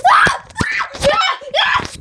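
Loud screaming and shouting voices in about four short bursts.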